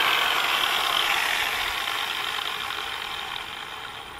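Angle grinder with a 24-grit sanding disc spinning down after being switched off: its whine falls slowly in pitch and fades away steadily.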